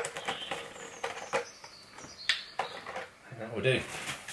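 Mixed-bed deionising resin beads pouring from a cut-down plastic bottle into a plastic resin vessel: a run of small scattered clicks and rustling, with the thin plastic bottle crinkling.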